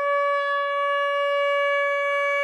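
Shofar (ram's horn) blast: one long note held at a steady pitch.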